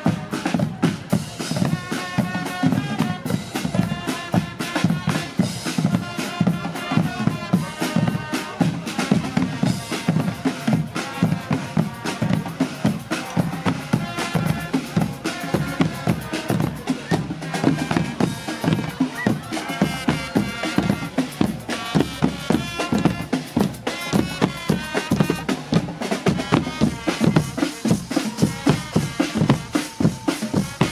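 Guggenmusik carnival band playing live: bass drums, snare drums and a cart-mounted drum kit beat a fast, steady rhythm under trumpets and other brass.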